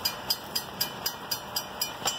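A high-pitched clicking that repeats evenly, about four times a second.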